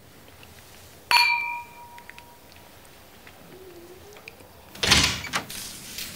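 A wine glass is struck once about a second in and rings clearly for about a second. Near the end, a door opens with a loud thunk and clatter.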